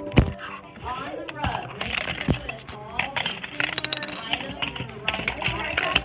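Several voices talking over one another, words indistinct, with a sharp knock just after the start and another about two seconds in.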